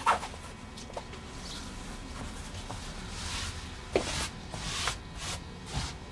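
Flannel quilt top rustling and brushing as it is lifted and smoothed flat against a wall, in several short swishes with a few light taps between them.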